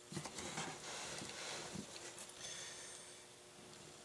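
Faint rubbing and light clicks of plastic as the cap of a replacement extension-cord plug is slid over the plug body and turned by hand to line it up. The sound eases off after about two and a half seconds.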